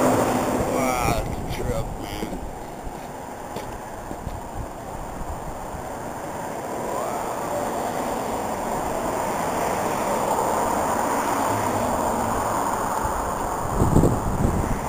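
Wind rushing over a handheld camera's microphone outdoors, a steady low rush that dips for a few seconds and then swells again.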